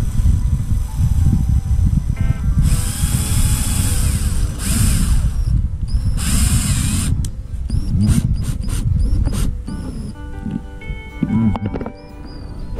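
Cordless drill-driver driving screws into a caravan's new marker light, whirring in three short bursts a few seconds in, then several very brief blips as the screws are snugged down.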